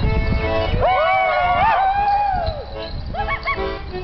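Morris dance tune played live. A long, high, wavering whoop rises over it about a second in, and shorter calls follow near the end.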